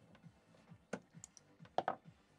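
A few sharp switch clicks, the loudest a double click near the end, as the mixed-light lamp is switched off and the room light comes on.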